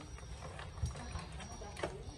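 A few sharp knocks and clicks, one about a second in and one near the end, from hands handling sacks loaded on a motorcycle's rear seat, over a low, uneven rumble.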